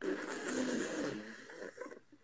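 A man laughing hard into the microphone, starting suddenly and fading over about two seconds.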